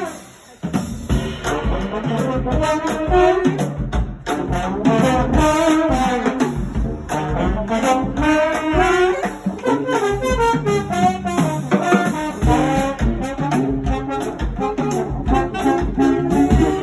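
Small brass band playing an upbeat tune together: trombone, saxophones and trumpet. The band breaks off briefly about half a second in, then comes back in.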